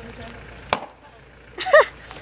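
An axe comes down once on a log standing on a chopping block, a single sharp crack a little under a second in, the blade lodging in the tough wood without splitting it. Near the end a loud voice cries out briefly, its pitch rising and falling.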